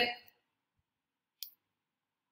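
The end of a woman's spoken word, then near silence broken once, about one and a half seconds in, by a single short, sharp click.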